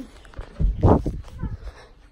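Handling noise from a phone being swung about: a burst of rubbing and a dull thump, loudest just under a second in.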